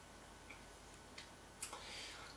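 Near silence with a few faint, sharp clicks spaced roughly a second apart, and a soft rush of noise near the end.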